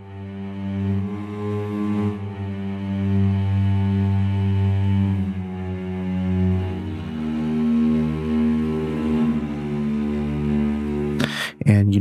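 Soundiron Hyperion Strings Micro sampled cellos playing soft piano-dynamic sustained notes: low bowed notes held, then moving to different pitches about six and a half seconds in, with the sound of the bow coming through.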